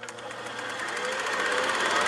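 Logo-animation sound effect: a rapid, machine-like pulsing buzz that swells steadily louder, with a faint rising tone partway through.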